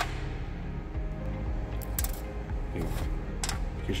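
Sharp crack as the hard, woody pau-ferro pod is broken with pliers, followed by a few light clicks and taps of pod pieces and seeds against a stainless steel tray.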